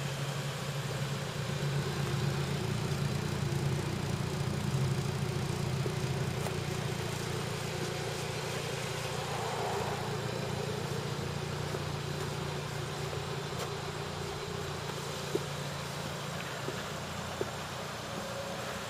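2011 Hyundai Sonata's engine idling steadily, a low even hum.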